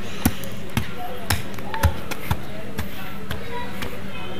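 Axe striking into the earth to cut a sapling out by its roots: a steady run of short, dull thuds, about two a second.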